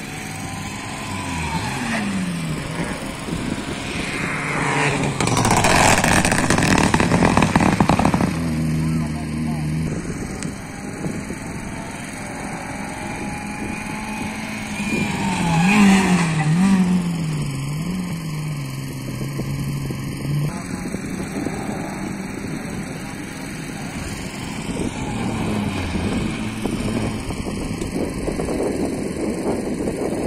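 Rally cars passing at speed on a tarmac stage, engines revving hard. The loudest pass comes about a quarter of the way in; a second car, a Renault Clio, goes by about halfway with its engine note jumping up and down in quick steps through gear changes. Another car is coming up near the end.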